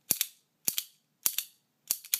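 Imco Solo Deluxe squeeze lighter clacking four times, about 0.6 seconds apart, as its lever is squeezed and released. Each squeeze snaps the lid and strikes the flint wheel, and the wick has not yet caught.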